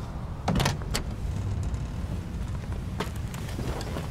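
Car door clicking and thumping open about half a second in, with further latch clicks at about one and three seconds, over a car's low steady rumble.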